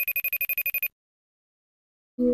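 Phone ringtone for an incoming call: a fast trilling electronic ring, about ten pulses a second, that stops about a second in.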